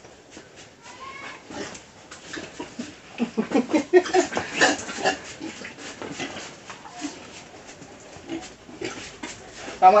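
Pigs grunting in a run of short grunts, thickest about three to five seconds in, with scattered small clicks and scuffs.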